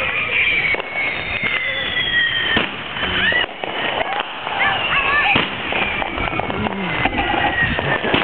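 Neighbourhood fireworks going off all around: a dense, constant run of pops and bangs, with long whistling fireworks that each fall slowly in pitch, one in the first few seconds and more in the second half.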